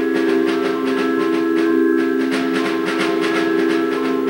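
Percussion ensemble playing: a steady held chord rings under a rapid, continuous run of quick struck notes.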